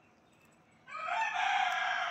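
A rooster crowing: one long crow starting about a second in.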